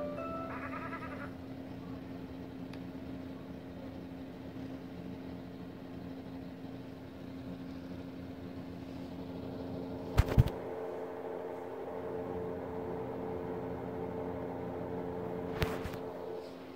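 Children's TV end-credits music played through the small speakers of a phone and tablet: a short chiming melody that stops about a second in, then steady held tones. Two loud knocks break in, a double one about ten seconds in and another near the end.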